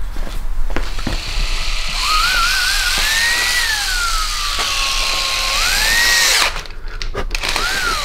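Cordless drill running, its motor whine rising and falling in pitch as the trigger is squeezed and eased. It starts about two seconds in, stops suddenly after about four and a half seconds, and gives one short burst near the end.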